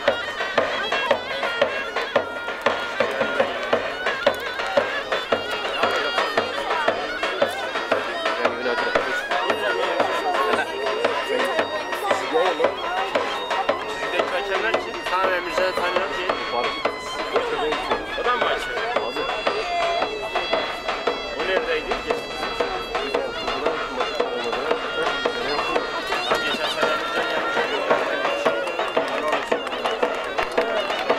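Zurna and davul playing traditional Turkish folk music: a shrill, wavering reed melody held without a break over steady drum beats.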